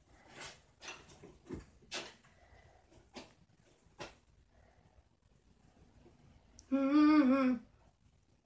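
Small plastic-sounding clicks and taps as Cuisenaire rods are handled and set on top of a stacked tower, about six light knocks spread over the first half. Near the end a person hums one short note that rises and falls, the loudest sound here.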